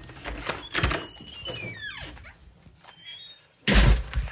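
A house door being opened and let go: a knock about a second in, a short squeak falling in pitch around two seconds, then a loud, heavy thump near the end.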